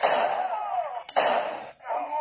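Two sudden, harsh vocal outbursts, the second about a second after the first, each cutting off after about half a second, heard through a laptop speaker.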